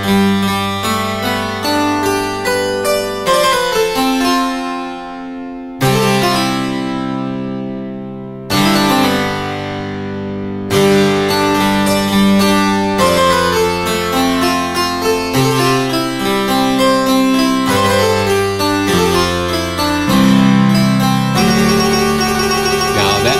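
Sampled French harpsichord with both eight-foot stops sounding together, playing bold low chords around G that move to a D add9 chord. Each chord starts with a sharp plucked attack and rings away, with fresh chords struck about six, eight and a half and eleven seconds in and quicker notes after that.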